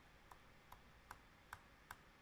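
Faint, evenly spaced clicks of laptop keys, five taps at about two and a half a second, as the Command-Z undo shortcut is pressed over and over.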